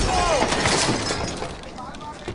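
A heavy crash with shattering, scattering debris that fades away over the first second and a half: a winged figure slamming into a stone pavement.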